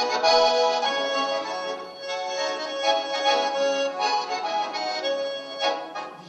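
A Russian garmon (button accordion) played solo: a folk melody over sustained chords, notes changing every fraction of a second, with a short louder accent near the end.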